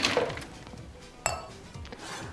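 A stainless-steel bar mixing vessel clinks once about a second in, a sharp metallic strike with a short ringing tail.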